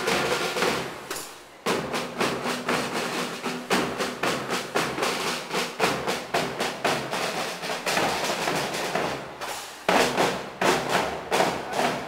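Drums beaten in a fast, steady rhythm, with a faint held pitched tone underneath. The drumming dips briefly about a second in and comes back in sharply, then swells again near the end.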